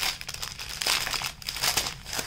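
Small clear plastic bag of diamond-painting drills crinkling and rustling irregularly as it is handled.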